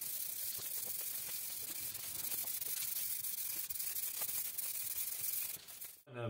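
Aerosol spray-paint can spraying in one long steady hiss that cuts off suddenly near the end.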